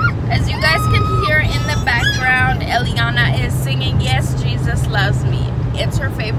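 Steady low road and engine drone inside a moving car's cabin, under a woman's voice talking.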